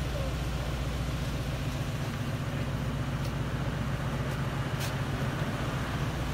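Mercedes-AMG C63 S twin-turbo 4.0-litre V8 idling steadily with a low, even exhaust note through cat-bypass (decat) downpipes.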